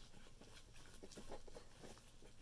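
Faint handling noise: small scattered clicks and rubbing as hands stuff a rubber balloon into the mouth of a plastic bottle.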